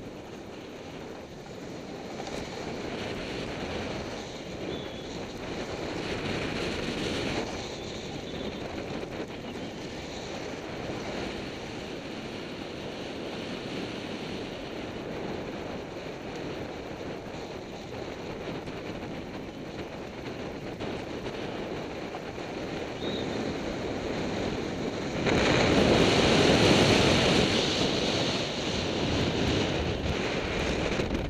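Wind rushing over the microphone of a camera moving downhill at speed, mixed with the hiss and scrape of edges sliding on packed, groomed snow. The rush swells to its loudest for about three seconds in the last part.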